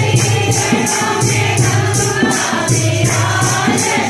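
Devotional bhajan singing through a microphone, with group voices and a steady jingling percussion rhythm of about four strokes a second over a low sustained note.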